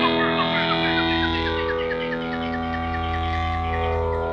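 Music: a held chord under a run of quick, repeating high notes.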